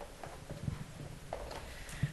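A few soft, irregular low knocks and bumps, with no speech.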